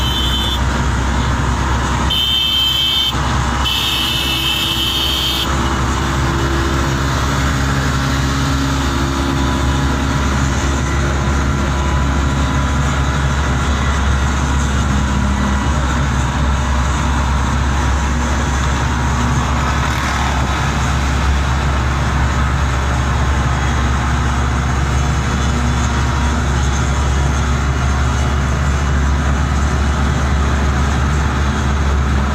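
Two-stroke Vespa auto-rickshaws and motorcycles running at speed together on a highway, over a steady low wind rumble on the microphone. Short, high horn toots sound in the first few seconds.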